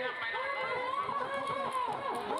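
A voice speaking or calling out in drawn-out syllables over the chatter of a crowd.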